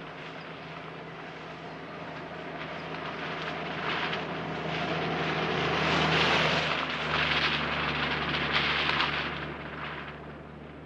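Open-top Jeep driving on a dirt track: a steady engine hum with tyre and wind noise that builds, is loudest a little past the middle, then falls away near the end.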